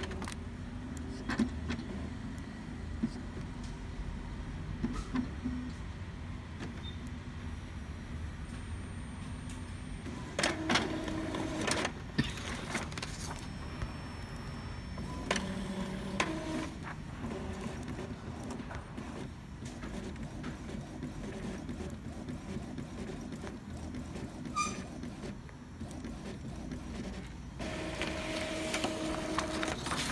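Epson L3110 inkjet printer powering up and running a nozzle-check print: its carriage and paper-feed motors whir and click in separate runs, louder at about ten seconds in, again at about fifteen seconds, and near the end as the sheet feeds through.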